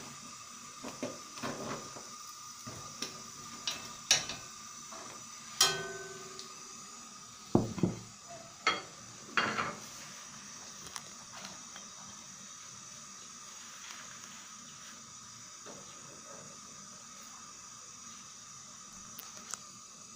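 Dishes being handled: a ceramic plate clinks and knocks several times in the first half as it is moved and set down, then only a faint steady background remains.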